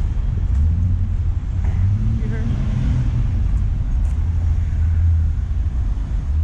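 Busy city road traffic with cars and vans going past, heard as a steady low rumble.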